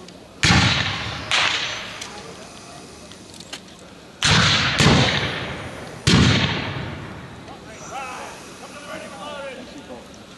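Black-powder rifle-muskets firing blank charges in a ragged, scattered string of about five shots, each ringing out with a trailing echo. Faint distant shouting follows near the end.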